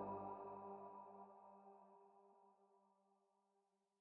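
The last sustained synthesizer chord of an electronic darkwave track dying away, fading to near silence within about two seconds.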